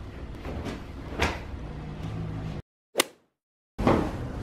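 Clothes being handled and rustled while unpacking, with a single knock about a second in. The sound then drops out to dead silence, broken by one short sharp swish, and near the end a bedsheet flaps as it is thrown out over a mattress.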